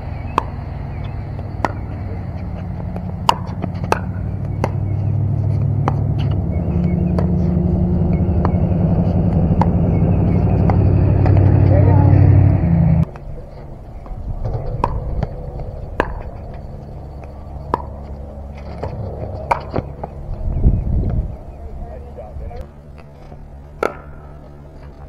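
Pickleball paddles striking the plastic ball in rallies: sharp pops every second or two. Under the first half runs a steady low engine hum that grows louder and cuts off suddenly about 13 seconds in.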